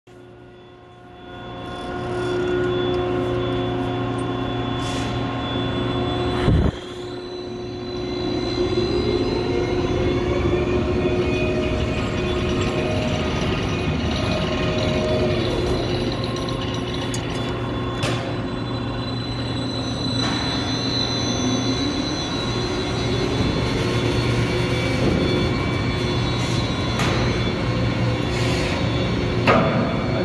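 Overhead bridge crane travelling on its rails with a steel coil of about 20 tons on its C-hook: a steady electric motor hum with whining tones that rise in pitch twice. There is a sharp metallic clank about six and a half seconds in.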